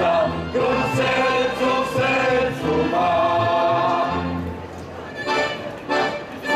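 A mixed group of men and women singing a song together with band accompaniment, amplified through stage loudspeakers, with a brief lull about two-thirds through.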